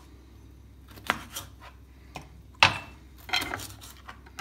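A few sharp clinks and knocks of kitchen utensils against a glass mixing bowl and a plastic cutting board as a flour coating for fish is mixed and the fish are cut, spaced irregularly, with the loudest knock about two and a half seconds in.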